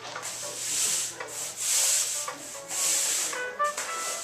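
Camera handling noise: rubbing and scraping on the handheld camera's microphone, in about four hissing bursts, over faint background music.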